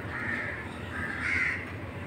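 A bird calling twice, each call short, about a second apart, over steady background noise.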